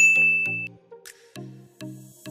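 A single bright ding sound effect at the start, ringing for under a second, over background music of short, repeated low notes.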